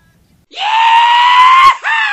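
An edited-in meme sound effect: a loud, scream-like cry starts about half a second in, held and slowly rising in pitch. It breaks off just before the end and a second cry begins, sliding down in pitch.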